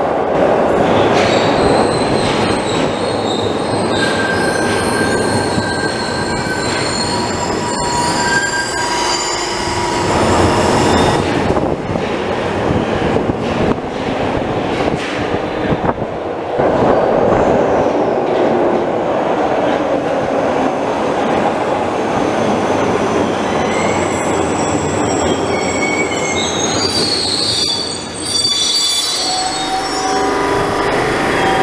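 Glasgow Subway trains running through the tunnel and station, a continuous rumble with high-pitched wheel squeal: a train pulls away into the tunnel at the start, and near the end another draws in, its wheels squealing as it brakes to a stop.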